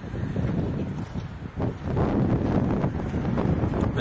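Wind buffeting the microphone: a low, uneven rushing noise that gets louder about halfway through.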